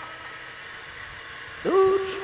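A man's voice in a sermon that is sung in a drawn-out chant. After a short pause in which the previous note fades out, he starts a new long held note about one and a half seconds in, sliding up into it.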